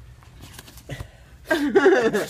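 A few faint rustles and clicks from the soft suitcase being handled, then a person starts laughing loudly about a second and a half in.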